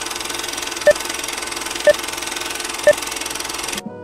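Old film-projector countdown effect: a steady mechanical rattle and hiss with a short beep once a second, three beeps in all. It cuts off sharply near the end as music begins.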